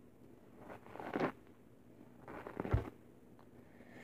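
Hairbrush strokes through long hair: two scratchy brushing sweeps, about a second in and again past the two-second mark, the second ending in a short low bump.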